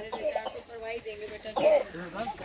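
Low voices, with a short, louder cough-like vocal sound near the end.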